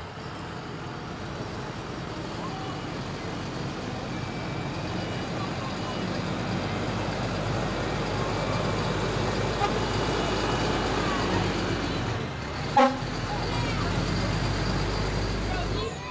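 Fire trucks' engines running as they roll past at parade pace, the low rumble growing louder as a truck draws close. About 13 seconds in there is one short, loud horn toot.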